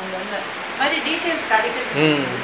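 A voice speaking in short phrases, not clearly made out, over a steady background hiss.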